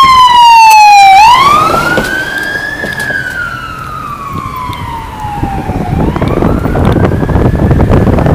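Federal Signal PA300 electronic siren on a Freightliner M2 ambulance sounding its wail tone: a slow rise and fall in pitch, about one full sweep every five seconds. It is loudest about the first second and then fades as the ambulance drives away, with wind buffeting the microphone near the end.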